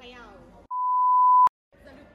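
A single steady, high-pitched edited-in bleep lasting under a second, growing louder and ending in a click, with the audio cut to silence around it, as used to censor a word. A voice is heard just before it.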